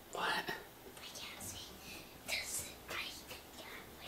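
Quiet whispering: a few short, breathy whispered phrases, with no voiced speech.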